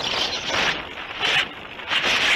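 Wind rushing over the onboard camera and airframe of a Multiplex Heron RC glider in a gliding turn, swelling and fading in uneven gusts with no motor tone.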